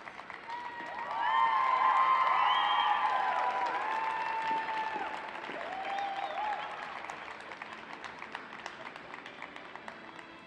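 Arena audience applauding at the end of a skating program, with high-pitched shouted cheers swelling about a second in; the cheering dies away and the applause thins out over the following seconds.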